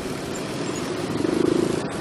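Motorcycle and scooter engines running in slow, stop-and-go traffic: a steady engine and road hum, with one engine's rapid pulsing note growing louder in the second half.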